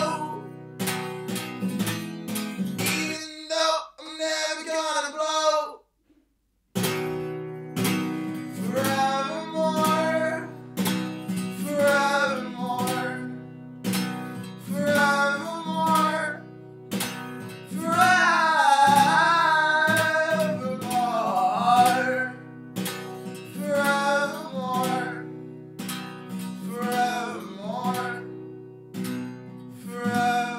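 A man singing while strumming an acoustic guitar. The guitar drops out about three seconds in, and everything stops briefly near six seconds before the strumming and singing resume. Around eighteen seconds he holds a loud note with a wavering pitch.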